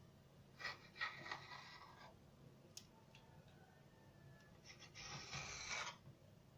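Faint scraping of a knife blade drawn through soft dough and along a stone countertop while cutting croissant triangles, in two strokes: one shortly after the start lasting over a second, and one near the end.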